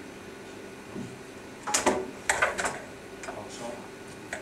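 A few sharp knocks or clacks, one loud one just under two seconds in and a quick run of three or four about half a second later, over a steady low hum.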